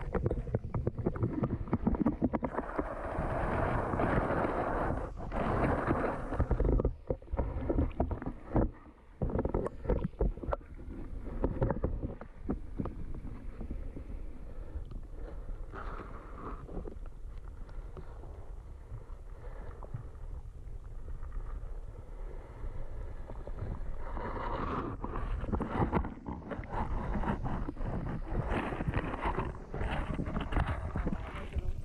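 Muffled water noise and low rumble picked up by a camera submerged in a stream inside an eel trap, with scattered knocks and bumps as the camera shifts against the mesh.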